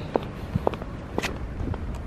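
Footsteps of sneakers on parking-lot asphalt, about two steps a second.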